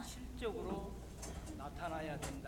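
Faint speech: a voice speaking quietly in short fragments, over a steady low hum.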